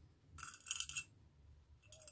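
Beads clinking against each other and the sides of a small clear pot as fingers rummage through them: a short run of light clinks about half a second in, then a single faint click near the end.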